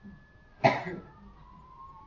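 A person coughing once, a short sharp burst about two-thirds of a second in.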